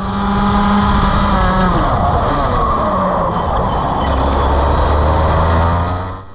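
Rotax Max 125 cc two-stroke kart engine heard onboard at racing speed, loud. About two seconds in its pitch drops as it comes off power, then it runs on at lower revs. The throttle is sticking open on each pick-up because the throttle cable is pinched between engine and chassis.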